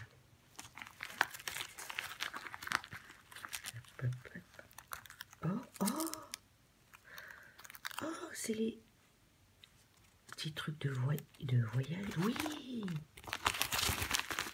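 Gift wrapping crinkling and rustling as it is pulled open by hand, busiest in the first few seconds and again near the end. Short murmured voice sounds come in the middle and later part.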